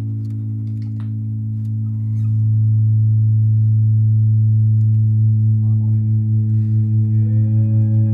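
A held low bass note with overtones that swells louder about two seconds in and then wavers. Near the end, higher notes slide upward in pitch.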